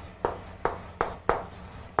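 Chalk writing on a blackboard: a quick series of short, sharp strokes, about five in two seconds, as the word "Cooperation" is begun.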